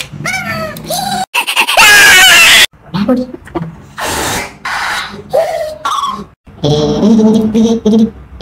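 A man's voice making exaggerated wordless exclamations and cries, broken by abrupt cuts, with a very loud, harsh burst about two seconds in that lasts about a second.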